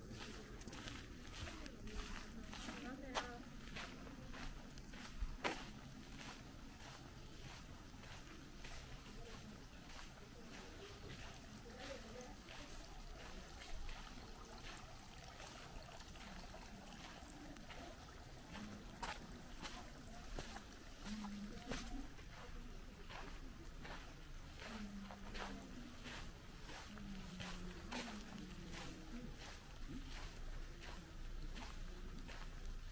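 Footsteps on a packed-earth and gravel courtyard, a steady series of soft crunching steps, with faint voices of people talking in the distance, mostly in the second half.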